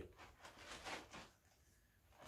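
Near silence, with a few faint rustles of a plastic carrier bag being held open in the first second or so.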